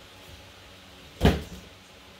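A single sudden thump about a second in, short with a brief ring after it, over a quiet room.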